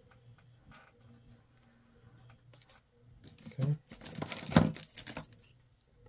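Trading cards being handled close to the microphone: soft scattered taps and clicks, then a brief loud rustle about four seconds in.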